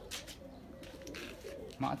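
Domestic pigeons cooing in a loft: low, wavering coos, with a few soft clicks among them. A man's voice starts right at the end.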